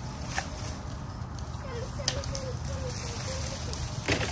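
Hand pruning shears snipping through weed stems, with a couple of sharp snips about half a second and two seconds in, and leaves rustling, over a steady low rumble.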